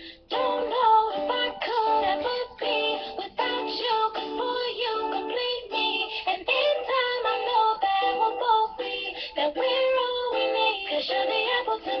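A girl singing a pop song while strumming chords on a guitar, the voice and guitar running together with only a brief break right at the start.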